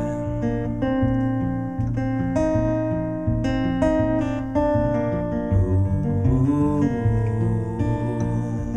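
Solo acoustic guitar playing an instrumental break, strummed chords mixed with ringing picked notes at a steady level.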